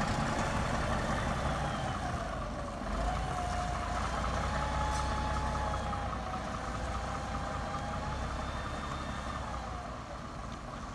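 Double-decker bus's diesel engine running as the bus pulls away and drives off, a low rumble under a whine that rises, dips about two and a half seconds in, and climbs again, fading toward the end.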